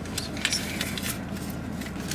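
Scattered light clicks and crackles of something being handled, over a steady low hum.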